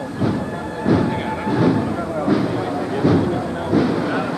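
Murmur of a crowd with a soft, even shuffle underneath, about one step every 0.7 s: the costaleros under the paso moving off in step with their feet dragging.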